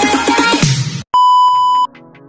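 Upbeat electronic music that cuts off about halfway through, followed by a single steady beep lasting under a second, louder than the music: a test-tone bleep laid over a glitch transition.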